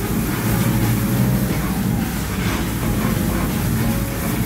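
Electric stirrer on a 150-litre stainless steel cooking kettle running steadily, its motor and gearbox driving the scraper paddle round the pan: a continuous low mechanical hum with a noisy overlay.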